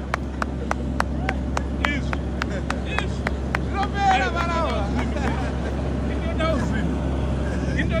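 Steady low drone of a borehole drilling rig's engine running. Over it, about three sharp claps a second in the first three seconds, then excited shouting and laughing as the borehole strikes water.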